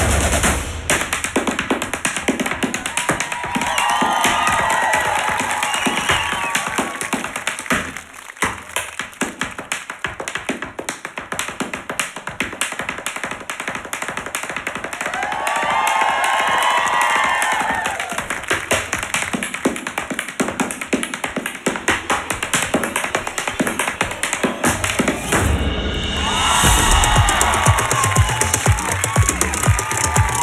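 An Irish dancer's shoes tapping fast rhythms on a stage platform, over backing music. The music thins out for a few seconds about eight seconds in, leaving mostly the taps.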